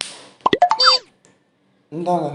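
Comic sound effect: a sudden hiss-like swish, then a quick run of sliding pitched tones, over within about a second.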